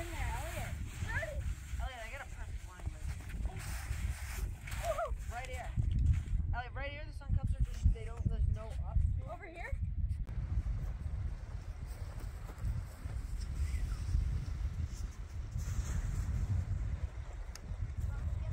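Footsteps crunching down a snowfield, over a steady low rumble of wind on the microphone, with faint voices talking through the first half.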